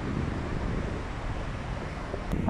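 Wind noise on the microphone, a steady low rumble, over the wash of sea surf breaking on the beach.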